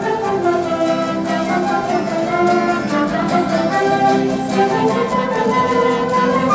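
Live Azorean folk band playing an instrumental passage: acoustic guitars strumming under a trumpet melody, steady and unbroken.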